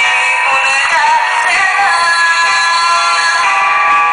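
Woman singing a Greek song into a microphone, backed by a small live band with guitars and keyboard. The recording sounds thin, with little bass.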